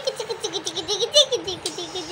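A high, child-like voice going on without a break, wavering up and down in pitch, with laugh-like sounds.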